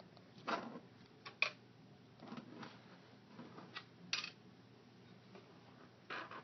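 Light clicks and rustles of plastic dolls and dollhouse pieces being handled and set down, about half a dozen scattered sounds with quiet gaps between.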